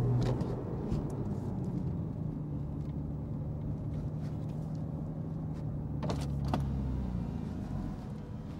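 Porsche 911 Carrera T's twin-turbo flat-six running while driving, heard from inside the cabin. Its note holds steady, then drops lower near the end, with a couple of short clicks just before the drop.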